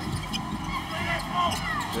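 Live basketball game sound on an arena hardwood court: a steady crowd murmur with the ball bouncing and a few short high sneaker squeaks about a second in.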